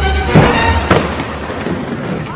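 Skateboard hitting a concrete skatepark floor with two sharp slaps, about a third of a second in and again near one second, over music with a heavy bass line.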